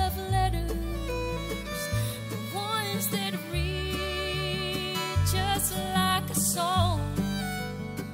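A woman singing a slow country gospel song, accompanied by acoustic guitar and held low bass notes.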